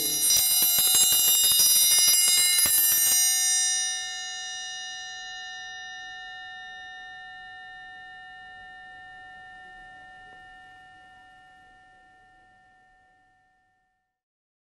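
Metal chimes struck in a fast, dense flurry of ringing strikes for about three seconds. The flurry then cuts off suddenly, leaving a few bell-like tones ringing on and slowly dying away to nothing near the end.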